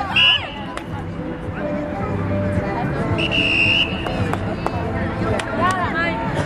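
Referee's whistle: a short blast just after the start and a longer, steady blast about three seconds in, stopping play. Players shout around it.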